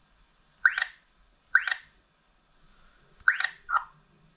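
XGODY 706 GPS navigator's touchscreen giving four short electronic chirps as its menu buttons are pressed: two about a second apart, then a quick pair near the end, the last one lower and shorter.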